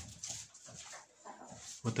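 Black-copper Marans chickens clucking faintly and softly in the coop.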